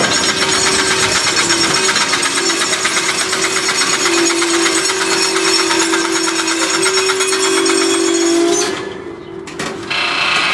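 A freight train of tank wagons creeps to a halt with its brakes applied, making a loud steady grinding with squealing tones from the brake shoes and wheels. The noise stops suddenly about nine seconds in, and a few sharp knocks follow near the end.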